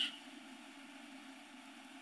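Faint, steady room tone: a low hum with light hiss from the studio microphone, after the last sound of a spoken word fades at the very start.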